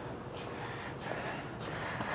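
Quiet room noise with two soft breaths from a person close to the microphone, about half a second and a second and a half in.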